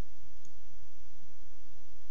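A steady low hum and hiss from the recording chain, with no distinct events: a pause in the narration of a screen recording.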